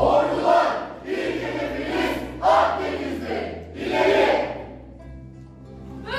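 A chorus of young voices shouting together in unison, four loud calls about a second apart, over quiet background music that carries on alone near the end.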